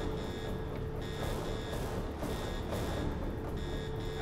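Prison alarm sounding: a high-pitched electronic beep in quick pairs, about one pair every second and a quarter, over a steady low hum and rumble.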